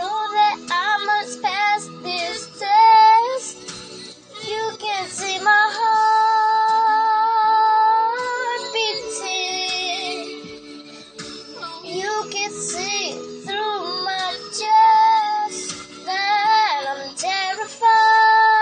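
A young girl singing a wordless passage, with long held notes and vibrato and short runs that glide up and down between them.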